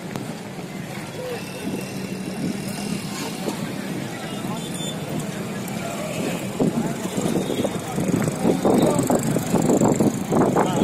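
Busy street noise: a motor vehicle's engine running steadily under people talking in the crowd. The voices grow louder and closer in the last few seconds.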